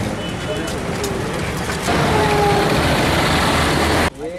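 A bus engine running, heard as loud steady noise with a few voices of people standing around it. The noise grows louder about two seconds in.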